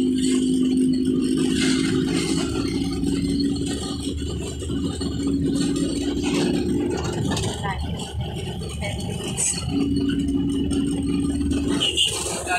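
Small motorcycle engine of a passenger tricycle running steadily on the move, with the sidecar rattling. Its steady hum drops away for a few seconds past the middle and comes back near the end.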